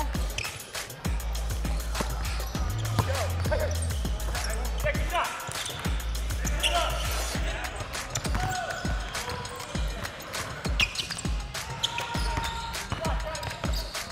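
A basketball bounced repeatedly on a hardwood gym floor during play, over background music with a heavy bass line.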